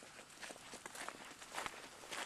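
Faint, uneven footsteps of several people walking on a gravel and dirt driveway.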